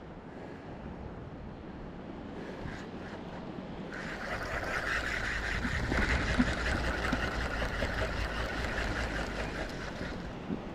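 Spinning reel being cranked to retrieve a lure: a steady, fast-ticking whirr that starts about four seconds in, with wind rumbling on the microphone.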